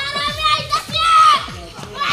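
Children's high-pitched voices shouting and calling out, loudest about a second in, over a quick run of falling low tones.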